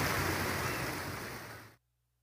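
Steady outdoor rushing noise that fades out over the second second and cuts to dead silence just before the end.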